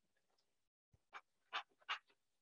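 Three brief, faint scratches of a felt-tip pen drawing strokes on paper, spaced under half a second apart in the second half, against near silence.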